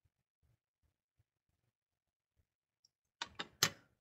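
Near silence for about three seconds, then a few short, sharp clicks in the last second.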